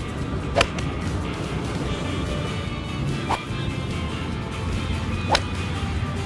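Vintage golf irons striking balls: a sharp click about half a second in and another near the end, with a fainter tick in between. Light background music plays under them.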